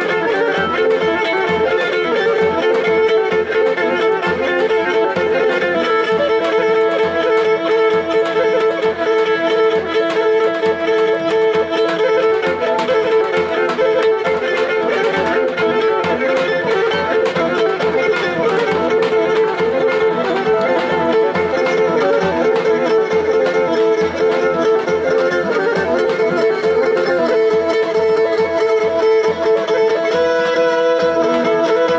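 Live folk dance music: a bowed fiddle plays a melody over a steady held note, with a regular beat on a large two-headed drum struck with a stick.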